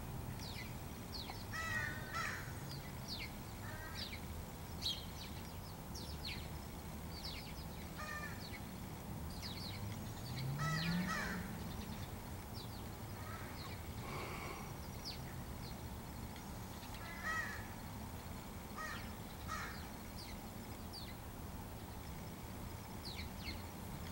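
Scattered short bird calls and chirps, a few every few seconds, over a steady low background rumble. About halfway through, a brief low tone rises in pitch.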